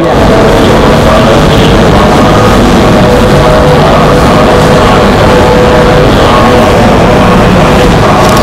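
Electromagnetic recording made through induction headphones: a loud, steady, dense electrical buzz with a few held tones in it, the chanting of monks broadcast over a temple's loudspeaker and Wi-Fi systems picked up as interference in the headphones' copper coils.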